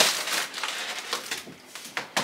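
Irregular rustling and crinkling handling noise, loudest at the start and fading away over about two seconds.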